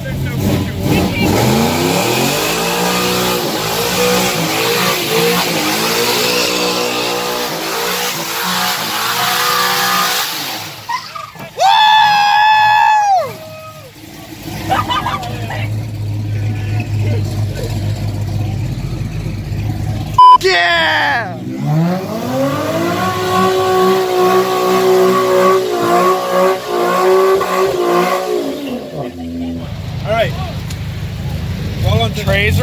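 Classic Oldsmobile Cutlass muscle car revving hard while drifting on wet pavement: the engine pitch climbs and is held high, drops, then climbs and holds again for a second run. About halfway through comes a brief, loud high-pitched shout, and a sharp knock about twenty seconds in.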